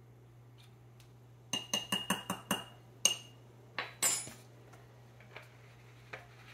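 Metal measuring spoon clinking against a glass mason jar: a quick run of light clinks with a ringing note, then a couple of knocks and a short rattle as the spoon and bottle are set down.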